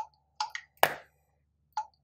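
Short clicks and brief beeps from a slide-type iKall feature phone being handled, with one louder, sharp click a little under a second in, like the slider snapping shut.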